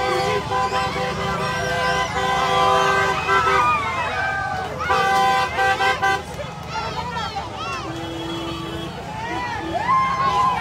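Vehicle horns honking in long, steady blasts amid a crowd of people shouting and cheering; a lower-pitched horn sounds briefly about eight seconds in.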